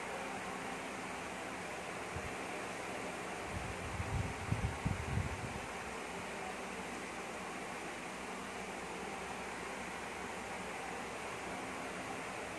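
Steady hiss of room noise with a brief low rumble about four seconds in; no music comes from the karaoke player, which is playing the disc's video without any audio.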